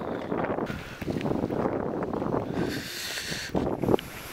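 Wind buffeting the camera microphone in uneven gusts, making a rough rumbling noise.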